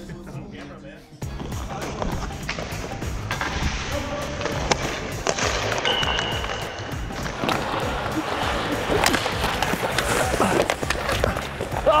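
Ice hockey practice sounds, with skates scraping the ice and sharp clacks of sticks and pucks, under background music. The sounds start suddenly about a second in.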